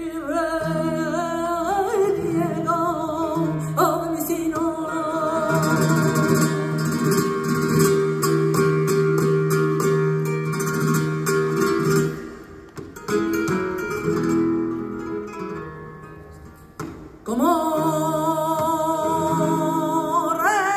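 Flamenco seguiriya: a singer's voice in long, wavering, ornamented lines, with acoustic guitar accompaniment. A long note is held in the middle, and the singing breaks off briefly twice in the second half.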